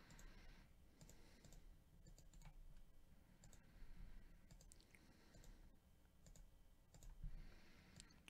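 Near silence with faint, scattered computer mouse clicks.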